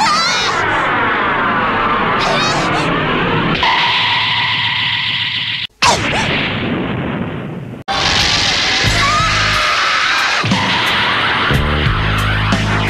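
Dramatic anime soundtrack music with a woman's startled cry at the start. About six seconds in the sound cuts out for a moment and a single loud impact follows: the thrown judoka hitting the mat. The music drops away sharply again near eight seconds, then comes back with deep low pulses.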